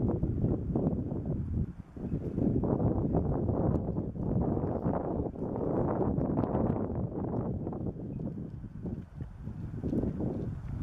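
Wind buffeting the camera's built-in microphone: a gusty, rumbling noise that rises and falls irregularly and drops away briefly about two seconds in.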